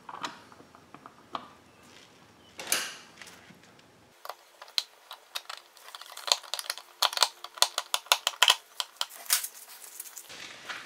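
A screwdriver driving in the screws of an electrical receptacle box's cover plate: a few scattered knocks as the cover is fitted, then a quick run of small clicks and scrapes through the second half.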